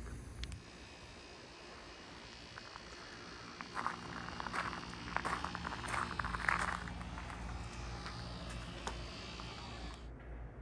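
Footsteps on a concrete walkway, a scattered run of scuffs and taps that gets busier around the middle, with a low rumble on the microphone in the second half.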